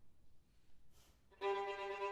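Two violins begin playing about a second and a half in: a sudden entry of a held, bowed note rich in overtones. Just before it there is a faint short hiss.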